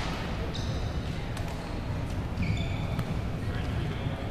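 A badminton rally on a hardwood gym floor: sharp racket strikes on the shuttlecock and short, high squeaks of court shoes as the players move, over a steady murmur of voices in a large hall.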